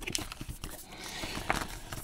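White cardboard packaging of a watch band being handled and unfolded: soft paper rustling with a few light clicks and taps as the sleeve is opened.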